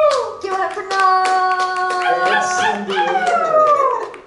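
Karaoke singing: a voice holds long sung notes, and the last note slides down in pitch over the final second. Scattered hand claps are heard through it.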